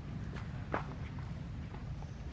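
Monkeys scuffling on leaf-strewn dirt: a few short scuffs and rustles, the loudest about three-quarters of a second in, over a steady low rumble.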